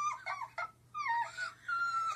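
A dog whining: a run of short, high-pitched whines, several sliding down in pitch, with a brief pause after the first half-second.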